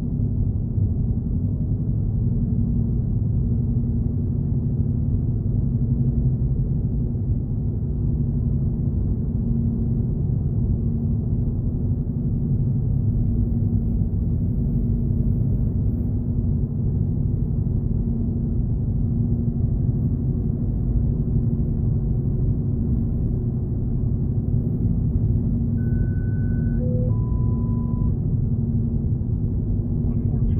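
Steady low rumble of car road and engine noise heard inside the cabin while driving. Near the end, three short electronic tones sound in quick succession: a high one, a brief low one, then a middle one.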